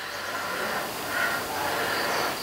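Coffee sipped from a mug with a long airy slurp: a steady hiss of drawn-in air with two slightly louder swells.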